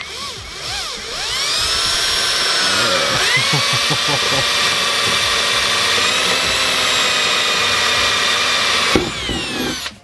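Cordless drill with a twist bit boring through a car's trunk lid. It is a steady high whine that winds up over the first second or so, drops in pitch about three seconds in, and winds down about a second before the end.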